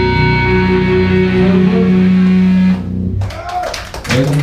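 Live metal band holding a final chord on distorted electric guitars and bass, ringing steadily, then cut off about three seconds in. A shouting voice follows near the end.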